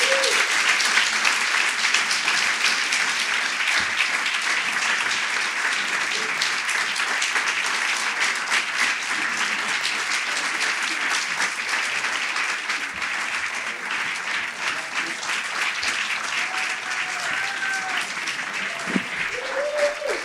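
Live audience applauding steadily, the clapping slowly tapering off, with a few voices calling out near the end.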